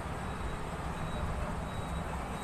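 Steady low rumble of background noise with a faint, thin high whine, unchanging throughout and with no distinct sounds in it.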